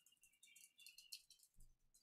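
Faint computer-keyboard typing: a run of soft key clicks at a very low level, close to silence.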